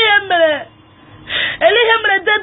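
A high-pitched voice in short, wavering phrases, with a pause of about half a second in the middle.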